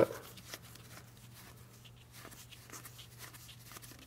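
Faint soft ticks and rustles of thick game cards being thumbed through and slid apart in the hands, over a low steady hum.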